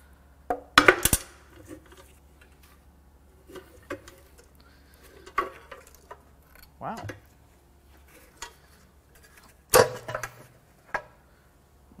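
Cast-aluminium upper oil pan of a Mercedes M156 V8 being worked loose and lifted off the engine block, with scattered metallic clanks and knocks. The loudest clanks come about a second in and again near ten seconds in.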